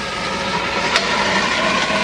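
Small electric air compressor running with a steady hum and hiss that slowly grows louder, with one sharp click about a second in.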